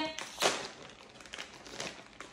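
Small plastic snack packet crinkling as it is handled, with one sharper crackle about half a second in, then softer, scattered rustles.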